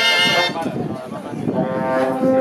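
A cobla, the Catalan sardana band of double reeds, brass and flabiol, playing a sardana. The full band's loud chord breaks off about half a second in. A softer passage of lower held notes follows and swells again near the end.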